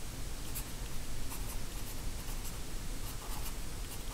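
Marker pen writing letters on paper: a series of short, faint scratchy strokes.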